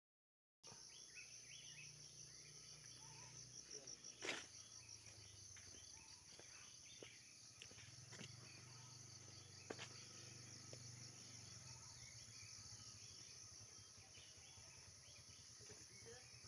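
Faint, steady insect chorus, a high pulsing trill, starting just after a moment of dead silence. A few sharp knocks come through it, the loudest about four seconds in.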